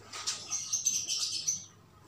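Birds chirping in a rapid, high-pitched twitter for about a second and a half, stopping shortly before the end.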